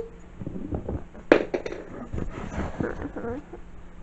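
Small objects clicking and knocking on a tabletop, as when toys are handled: one sharp click about a second in, then several lighter ones, with faint murmuring underneath.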